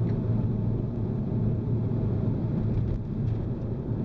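Renault Mégane RS 250's turbocharged 2.0-litre four-cylinder engine and exhaust, heard from inside the cabin, running at a steady low drone while driving, easing slightly about three seconds in.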